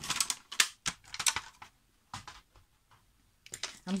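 Handling sounds of a scored sheet of tea-dyed paper and a paper-scoring board being moved about on a tabletop: a run of light clicks and rustles in the first second and a half, and one more about two seconds in.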